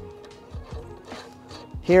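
Faint light clicks of steel fender washers and a nut being handled onto a bolt, over a faint steady tone.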